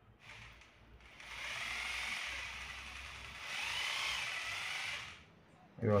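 iBell 800 W hammer drill's motor run with no bit load: it spins up about a second in and runs steadily. It gets louder and higher for a while past the middle, then winds down and stops shortly after five seconds.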